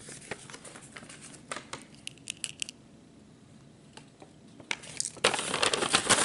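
Paper envelope being handled: scattered crinkles and taps in the first few seconds, then a louder, dense rustle of paper near the end.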